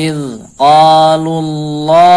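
A man's voice reciting Quranic Arabic in a slow chant. A short falling phrase is followed by a long, steady drawn-out vowel.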